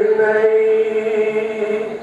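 A man's voice singing a line in a slow, chant-like melody, holding one long note that fades near the end.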